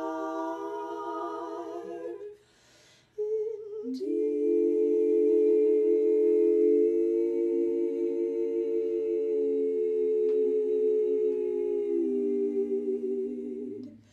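Three women's voices (soprano, mezzo-soprano and alto) singing a cappella in close harmony: a held chord with vibrato, a brief pause for breath about two and a half seconds in, then a long sustained chord from about four seconds that moves lower near the end.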